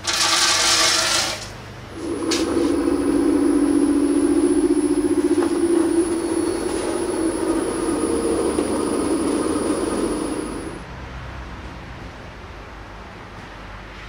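Peanuts poured from a metal scoop into the plastic hopper of an electric peanut butter grinder, rattling for about a second. A click follows, then the grinder's motor runs with a steady hum and a high whine as it grinds the nuts into paste, stopping after about nine seconds.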